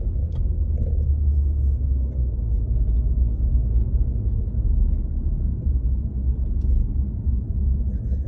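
Steady low rumble of a car on the move, road and engine noise heard from inside the cabin.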